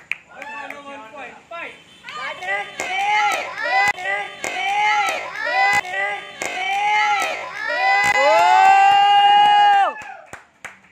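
Children's high-pitched shouts in a rhythmic chant, about two calls a second, cheering on a kickboxing sparring bout. The chant ends in one long held shout near the end, with a few sharp knocks among the calls.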